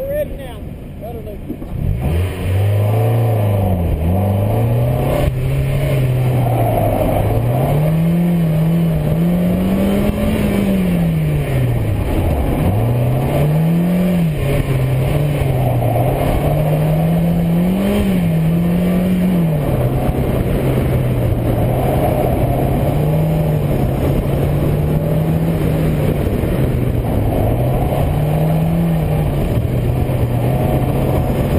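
Mazda Miata's four-cylinder engine driven hard through an autocross course: quiet at first, it picks up about two seconds in, and its note then rises and falls again and again with throttle, braking and gear changes.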